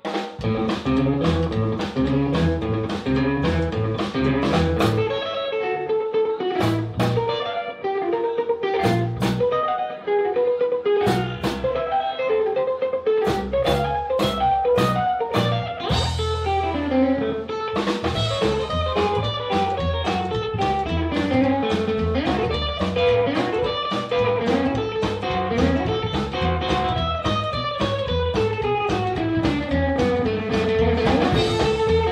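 Live small band playing a swing tune: electric guitar lead lines over drum kit, with the bass and full rhythm section filling in about sixteen seconds in.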